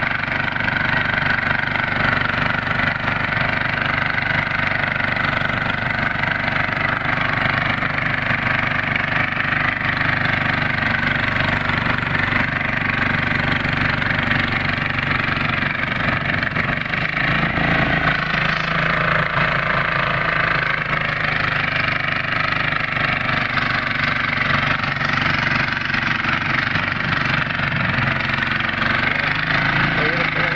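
Small engine of a walk-behind floating tiller running steadily as it is worked through a muddy rice paddy; its note shifts a little about halfway through.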